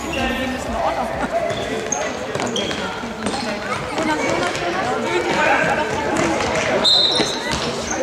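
Indoor youth football in a sports hall: shouting voices echo around the hall while the ball is kicked and bounces on the hard floor, with brief high-pitched squeaks scattered through.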